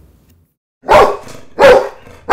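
A dog barking twice: the first bark comes just under a second in, and the second about three quarters of a second later.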